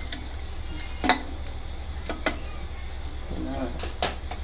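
Steel tongs clinking against a small steel bowl of charcoal as it is lifted out of a pot of biryani after smoking it: a few sharp metal clicks, the loudest about a second in, over a steady low hum.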